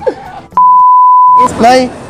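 A single steady, high-pitched beep lasting about a second, laid over the soundtrack with all other sound cut out: an edited-in censor bleep. Speech comes just before and after it.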